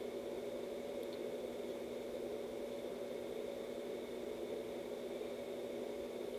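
Steady low hum and hiss of room tone, with a few faint unchanging tones underneath and nothing else happening.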